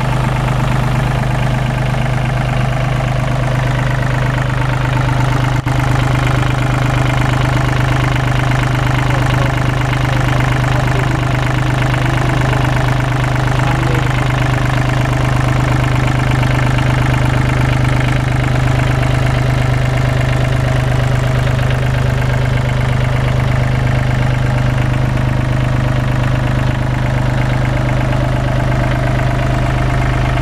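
Komatsu WA20-2E wheel loader's 1,200 cc three-cylinder diesel engine (Komatsu 3D78AE-3A) idling steadily at an even speed, heard close up in the open engine compartment.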